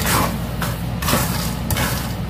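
Wooden spatula stirring raw peanuts through hot salt in a nonstick wok, with no oil: a gritty scraping rustle about twice a second. A steady low hum runs underneath.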